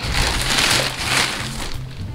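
Thin plastic bag rustling and crinkling as hands rummage through toys inside it and pull one out, over steady background music.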